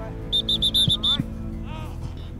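A sports whistle blown in a quick run of about six short, sharp blasts, over background music.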